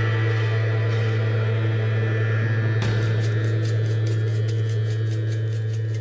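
Background ambient music: a steady held low bass note, joined about halfway through by a fast ticking rhythm of about four beats a second.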